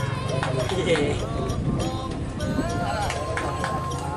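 Several men shouting and calling out over one another as a pair of racing bulls gallop past, with scattered sharp knocks and a steady low rumble underneath. A high held note comes in about three seconds in.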